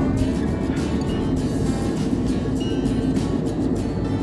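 Steady background music with a low, even rumble underneath.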